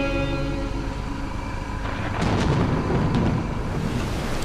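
Background guitar music fading out over the first couple of seconds, then a low rumbling noise with a few sharp knocks.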